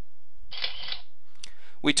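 Camera-shutter sound effect: a short rasping shutter sound lasting about half a second, then a single click, while a picture animates onto the slide.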